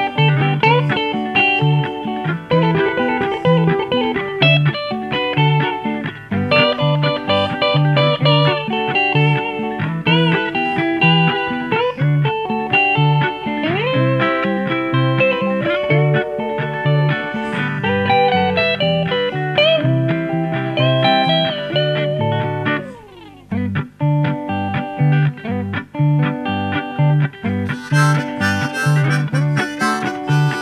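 Solo guitar instrumental break: a fingerpicked, steadily pulsing low bass note under a melody line with bent and sliding notes, and a brief slide down the neck that lets the sound drop a couple of seconds before the end. A harmonica comes in near the end.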